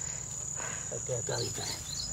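Insects in the surrounding grass and brush keeping up a steady, unbroken high-pitched drone, with small repeated chirps above it.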